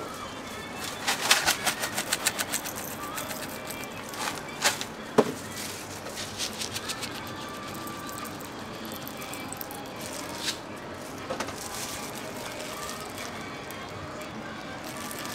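Utensils and topping containers handled while a crepe is being topped: about a second in comes a quick rattling run of small clicks, followed by a few single sharp clicks and taps over steady background noise.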